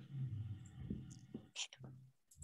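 Faint whispered speech over a steady low hum, with a short hiss about one and a half seconds in.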